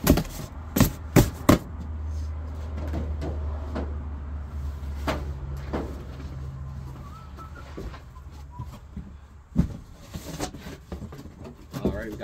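Cardboard boxes and heavy bound books being handled and set down: a quick run of sharp knocks in the first second and a half, then a few scattered thuds. A low steady rumble runs under them for several seconds in the first half.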